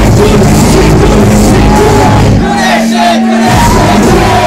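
Loud live hip-hop music over a club sound system with the crowd shouting along. The bass drops out for about a second near the middle, leaving a held low note, then returns.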